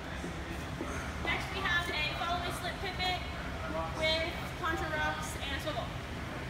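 A woman's voice speaking from about a second in until near the end, over a steady low hum.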